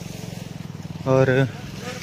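An engine running steadily at idle, a low hum with a fast, even pulse; a man says a word about a second in.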